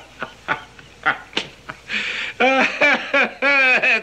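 A man laughing. Soft chuckles die away over the first second or so, then two louder, drawn-out peals of laughter come in the second half.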